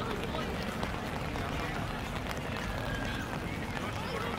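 Indistinct voices of players and spectators around a rugby field, with no clear words, over a steady low rumble.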